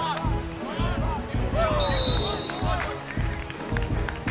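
Background music with a steady, pulsing beat, with voices over it. A brief high steady tone sounds about two seconds in.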